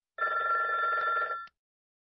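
A telephone rings once, a steady ring lasting about a second and a half: an incoming call.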